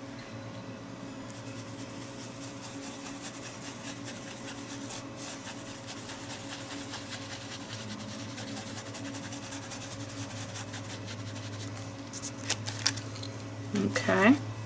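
Round foam dauber dabbing acrylic paint through a plastic stencil onto a journal page: soft, rapid taps over a steady low hum. A few louder clicks near the end as the stencil is lifted off the page.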